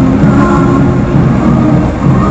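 Steady engine and tyre noise inside a truck cab at highway speed, with music from the cab radio.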